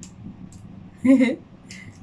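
A woman's brief voiced murmur about a second in, over quiet room noise. Faint small clicks come from a raw peanut shell being split open by hand.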